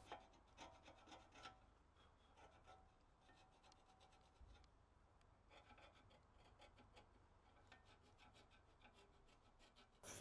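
Faint scraping of a screwdriver blade against an Audi Q5's front brake pad carrier, in short irregular strokes that come in runs with pauses between them, clearing built-up brake dust from where the pads sit.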